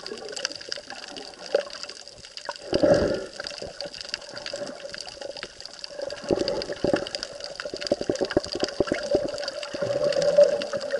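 Muffled underwater water noise picked up by an action camera inside its waterproof housing, with a swell about three seconds in and a run of quick crackles through the second half.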